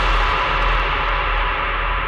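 Dubstep instrumental passage without vocals: a sustained wash of sound, like a long ringing cymbal or reverb tail, over a steady deep bass, its top end slowly dimming.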